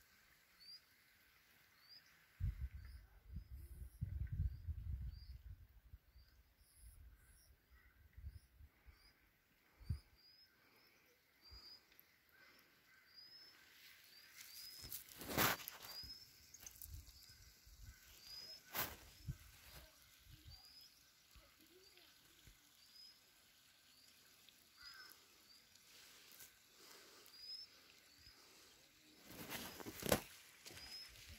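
Faint short rising chirps, evenly repeated about one or two a second, from a small bird calling. A brief low rumble comes near the start and two sharp clicks in the middle.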